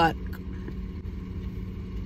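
Steady low rumble of an idling car.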